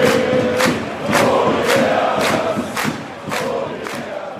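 Football stadium crowd singing a chant together, backed by a steady beat of about two strokes a second.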